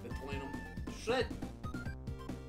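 Background music with a steady beat, with a short vocal about a second in.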